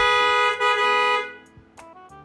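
Car horn honking at a closed gate, two blasts run close together, the second ending about a second and a half in, over background music.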